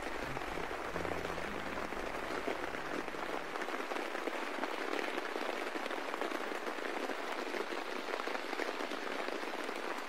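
Recorded rain sample, a steady patter, closing out a lo-fi hip hop beat. Low bass notes fade out about three and a half seconds in, leaving the rain alone.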